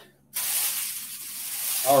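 Clothing handled close to the microphone: a shirt pulled out of a pile gives a high swishing rustle that starts suddenly and lasts about a second and a half.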